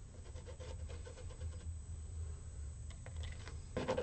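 Faint rubbing and scraping on an acrylic-painted canvas, growing louder near the end as a flat scraper is dragged across the paint, over a steady low hum.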